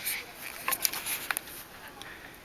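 Footsteps crunching in fresh snow: a few short, crisp crunches in the first second and a half, then quieter.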